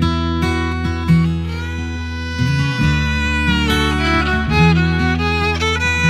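Instrumental song intro: acoustic guitar strumming, joined by a violin melody that comes in about a second and a half in.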